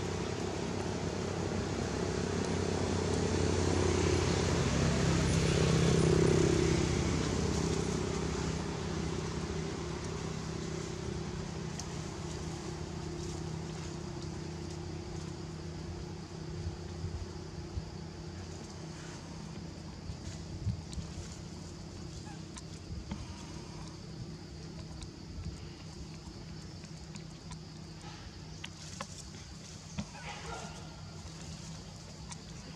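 A motor vehicle's engine humming nearby, growing louder to a peak about six seconds in and then slowly fading away.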